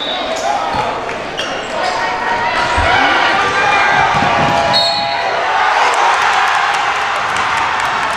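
Basketball game in a gym with a hardwood floor: the ball bouncing, short high sneaker squeaks and many voices from players and spectators. From about three-quarters of the way through, the crowd cheers and claps.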